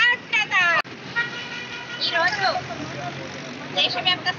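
Voices of a street protest crowd, then, after a cut, a vehicle horn sounding steadily for about a second over street traffic noise, with a voice calling out before the speech resumes near the end.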